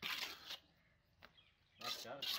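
Wet cement mortar being scraped and spread with a steel trowel: two rough scrapes about a second and a half apart, with a light click between.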